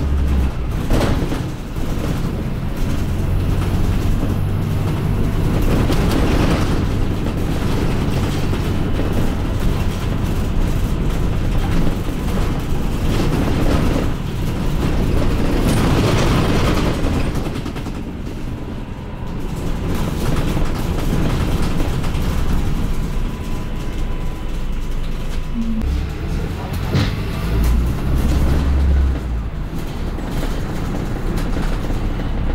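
London double-decker bus running along the road, heard from on board: a steady low engine drone with road noise, swelling a few times and easing off briefly a little past the middle.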